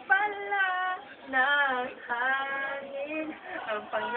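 A young man singing a ballad unaccompanied in a high voice, holding long drawn-out notes that bend in pitch across three or four phrases.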